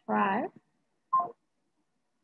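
A person's voice coming through a video call in two short snatches, about half a second at the start and a brief one just after a second in, each cut off abruptly to silence.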